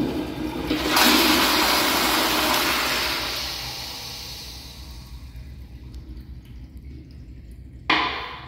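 Commercial flushometer-valve toilet flushing: a rush of water that swells about a second in, then fades over the next few seconds to a low refill trickle. Near the end, a sharp clack as the plastic open-front seat drops onto the bowl.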